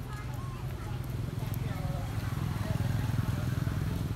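A motor vehicle's engine running steadily close by, a low pulsing rumble that swells a little about a second in, with faint distant voices chattering over it.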